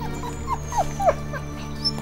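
Grey wolves whimpering: about half a dozen short yips in quick succession, each falling in pitch, over background music.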